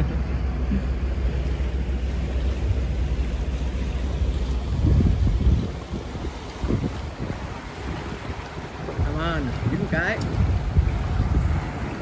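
Twin Suzuki 150 outboard motors running at trolling speed, with a steady low rumble, water rushing past the hull and wind buffeting the microphone. A strong wind gust hits about five seconds in.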